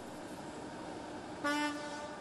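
A ship's horn on a car ferry sounds one short blast about one and a half seconds in, a single steady pitched tone lasting about half a second, over a faint steady background hum.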